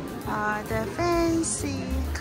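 Music: a high voice sings held, steady notes over a low bass pulse.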